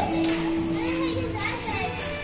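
Children's voices and chatter in a busy play area, with a single held note through most of it and background music.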